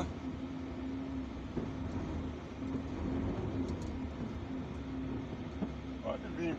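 Heavy truck's diesel engine running at low speed, heard from inside the cab as the truck creeps forward: a steady low rumble with a faint hum.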